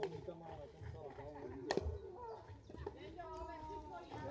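A single sharp crack of a bat hitting a slowpitch softball, about halfway through, over voices talking in the background.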